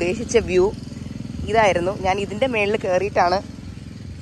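A woman talking in short phrases, which the recogniser did not write down, over a steady low engine-like drone.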